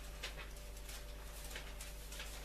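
Bible pages being leafed through, giving several short, soft rustles over a steady low hum.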